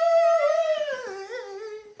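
A single high singing voice holding a long note, then sliding down about a second in through a short wavering run before stopping near the end.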